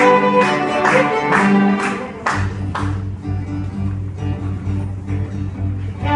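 Small string ensemble of violins and cello with a bass guitar playing a piece. Short accented strokes fall about twice a second for the first two and a half seconds or so, then the strokes give way to a held low bass line under softer sustained notes.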